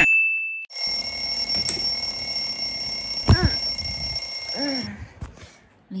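An alarm rings steadily for about four seconds and cuts off suddenly, as if switched off on waking; a person groans sleepily twice during and just after it. A brief rising swoosh comes first.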